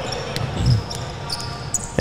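A basketball being dribbled on a hardwood gym court, a few low bounces over the steady noise of the hall.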